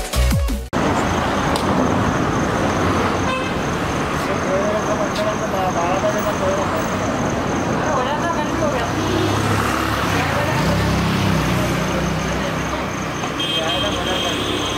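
Busy street traffic with vehicle horns tooting and people talking over a steady din. The electronic intro music cuts off less than a second in.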